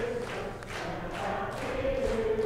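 Many voices singing a hymn together in slow, held notes.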